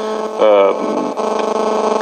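A man's voice over the microphone: a short word, then a drawn-out, steady hesitation sound held for about a second.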